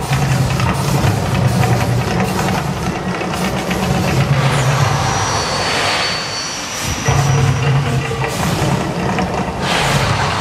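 Mirage volcano show erupting: a loud music soundtrack over a deep, steady rumble, with a rush as flames burst up about six seconds in. The rumble drops out briefly just after the burst and comes back suddenly a second later.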